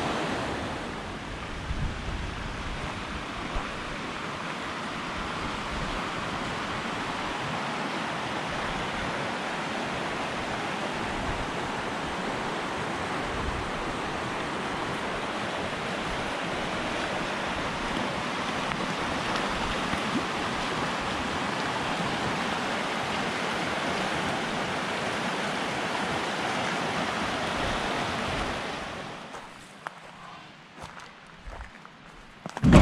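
Mountain creek rushing over rocks: a steady hiss of running water that fades out near the end.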